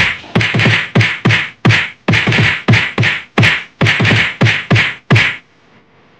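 A rapid, evenly paced string of punch-and-whack sound effects, each a low thud with a sharp crack, about three a second, that stops about five seconds in.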